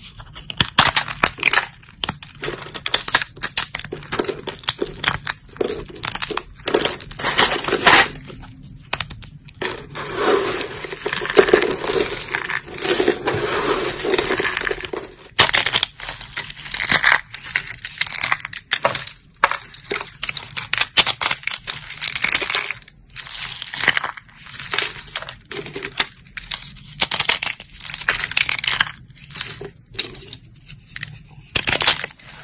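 Thin, dry soap plates being bent and snapped by hand: many crisp cracks and crunches in irregular bursts with short pauses, most continuous in the middle.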